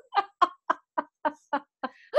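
A woman laughing: a run of about eight short, evenly spaced pitched "ha" pulses, about four a second, growing fainter toward the end.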